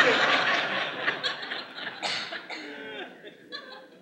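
A congregation laughing, loudest at first and dying away over about three seconds.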